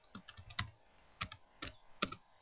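Computer keyboard being typed on: a quick run of key clicks in the first half second, then a few more keystrokes in pairs later on.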